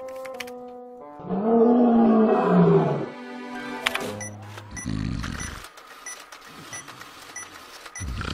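A loud, drawn-out roar-like growl lasting about two seconds, rising and then falling in pitch, after a few steady music notes. Then a desktop printer runs, with a low whirring burst and a regular ticking about twice a second as it prints.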